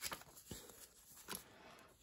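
Faint rustle of paper banknotes with a few soft flicks as a stack of bills is handled and pulled out of a binder's cash pocket.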